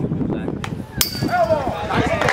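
A metal baseball bat hitting a pitched ball about a second in: one sharp ping that rings on briefly, followed by spectators shouting.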